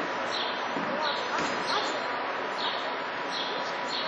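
Hoofbeats of a horse cantering on a sand arena, a regular soft beat about every two-thirds of a second, over a steady outdoor hiss. Birds chirp now and then.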